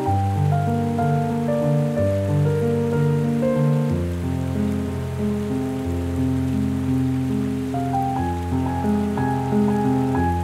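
Solo piano music with heavy reverb: slow, solemn held chords, the bass note changing about every two seconds, over a soft even hiss.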